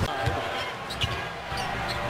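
Basketball dribbled on a hardwood court, a few sharp bounces over the steady murmur of an arena crowd.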